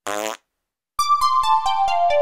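A short cartoon fart sound effect, a buzzy blast lasting about a third of a second. A second in, music starts with a run of quick plinking keyboard notes stepping downward in pitch.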